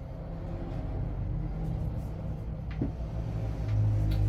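A low steady rumble that grows louder near the end, with a single light click about three seconds in.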